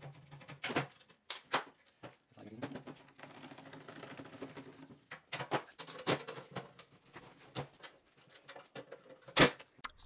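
Sharp metallic clicks and knocks of a screwdriver and the lock working against the sheet-metal chassis of a cash drawer as the lock cylinder is taken out. There is a cluster of clicks about a second in, more around five to six seconds, and a loud knock near the end.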